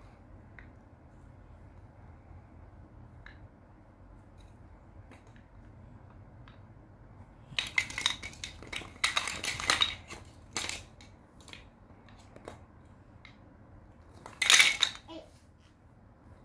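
Hard rectangular toy blocks clicking and clattering against one another as they are picked up and set down: scattered light clicks, a run of clatter about halfway through, and the loudest clatter near the end.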